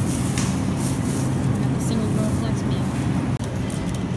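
Grocery store ambience: indistinct voices of other shoppers over a steady low hum, with a thin plastic produce bag crinkling in the first second or so.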